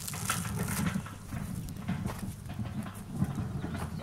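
Footsteps over soft garden soil with a low, steady wind rumble on the microphone, and a few short scuffs and rustles.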